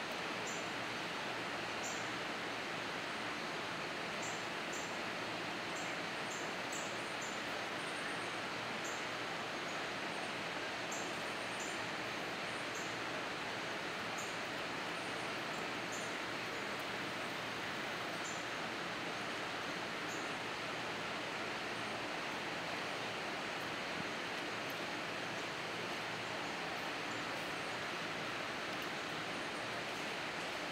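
Steady outdoor background noise, an even rush with no distinct events, and faint short high chirps scattered throughout.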